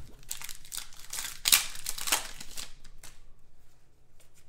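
Crinkling and rustling of a foil trading-card pack wrapper being torn open and handled, along with cards sliding against each other. The rustling peaks about a second and a half in and dies away before the end.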